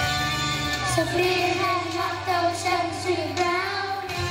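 Children's choir singing a country-style Christmas song over an instrumental backing, the voices gliding from note to note.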